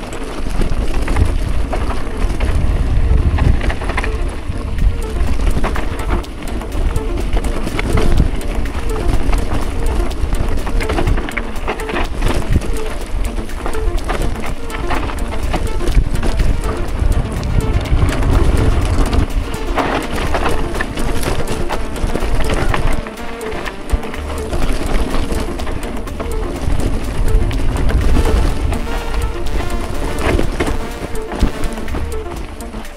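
Wind buffeting the microphone and a gravel bike rattling and clattering over loose rock on a descent, with many small knocks throughout. Music plays along with it.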